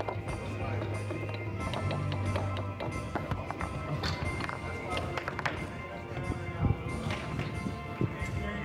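Table-soccer (foosball) play: the hard ball knocks against the plastic men and the table walls in quick, irregular clicks, with one sharp knock at its loudest about two-thirds of the way in. Music plays in the background.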